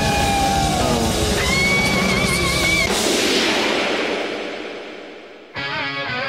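Instrumental rock music: electric lead guitar holds a long, wavering vibrato note over bass and drums. The bass and drums then drop out and the sound fades away, until the full band comes back in suddenly near the end.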